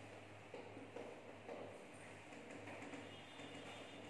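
Very faint scuffing and a few light knocks of a cloth duster wiping drawings off a whiteboard, over a low steady room hum.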